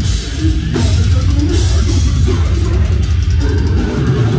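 Live deathcore band playing: heavily distorted low guitars and bass over a drum kit, with cymbal crashes at the start, about one and a half seconds in, and again near the three-second mark.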